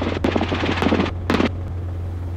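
Robinson R22 helicopter in cruise flight, a steady low drone heard inside the cabin, with a few brief crackles in the first second and a half.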